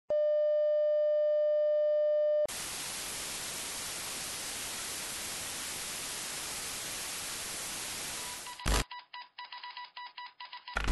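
A steady electronic beep tone lasts about two seconds and cuts off sharply into an even television-static hiss. The hiss runs for about six seconds, then ends in a short burst and a stuttering, glitchy digital chatter with faint beeps.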